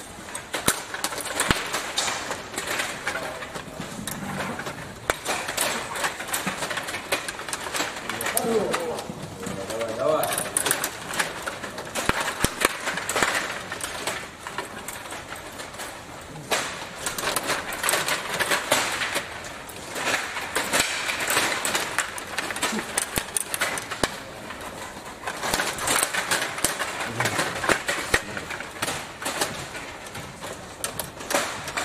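Stiga Play Off 21 table hockey game in play: a continuous, irregular clatter of clicks and knocks as the control rods are pushed, pulled and twisted and the plastic players strike the puck and each other.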